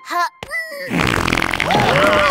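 Cartoon fart sound effect: a long, loud fart that starts about a second in and keeps going, after a few brief short sounds at the start.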